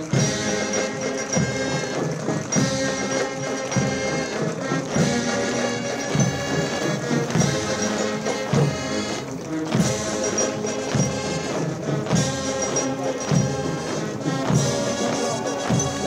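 Military band music: brass playing a march with a steady drum beat.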